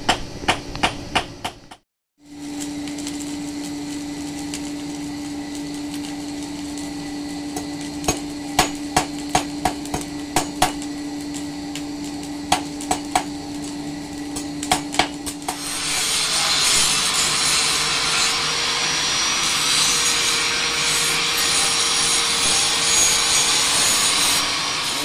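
Hand hammer striking hot steel on an anvil in quick runs of blows, over a steady low hum. About two-thirds of the way through, an angle grinder starts grinding the steel and runs on to the end.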